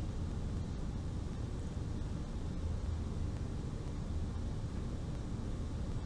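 Steady low background hum with a faint hiss, unchanging throughout.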